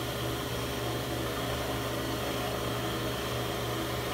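Skate sharpening machine running, its grinding wheel spinning with a steady hum while the diamond point dresser is set up to dress the wheel.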